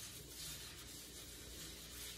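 Faint, steady rubbing of fingertips smearing seasoned olive oil across a metal baking sheet.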